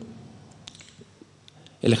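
A pause in a man's speech holding a few faint, sharp clicks spread across about a second, before his voice starts again near the end.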